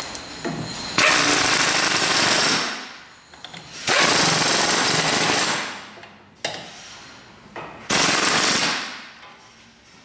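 Pneumatic hand tool run in three short bursts, each starting abruptly and tapering off as it stops. The bursts come about a second in, near the middle, and near the end.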